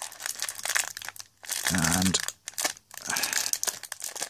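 Clear cellophane wrapping on a stack of trading cards being picked at and torn open by hand, crinkling and crackling in irregular bursts with short pauses. A brief voiced sound comes about two seconds in.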